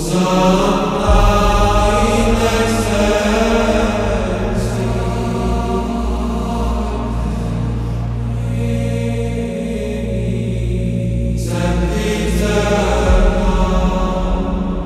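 Gregorian-style chant: voices singing long, slowly moving notes over a steady low drone, with the drone note shifting a few times. The singing thins out briefly and a new phrase comes in strongly late on.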